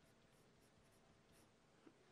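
Very faint scratching of a pen writing a word on paper, barely above near silence.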